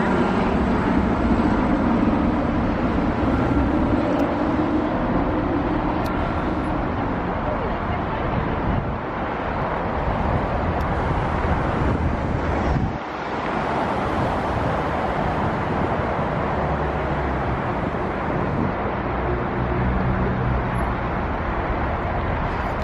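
Helicopter flying overhead, its rotor and engine a steady drone.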